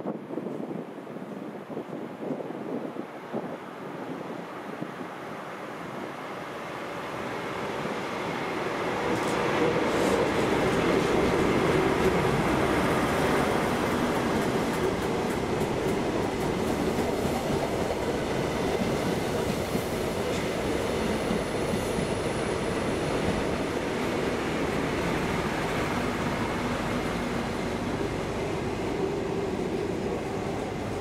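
High Speed Train test train, a pair of Class 43 diesel power cars with yellow measurement coaches, passing slowly through the station. The sound swells as it approaches, is loudest about ten seconds in, then holds steady as the coaches roll by.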